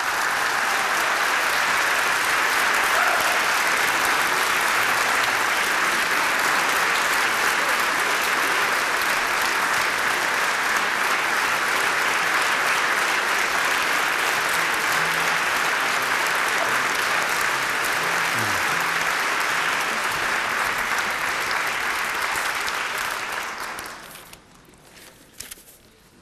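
A large concert audience applauding steadily, dying away just before the end.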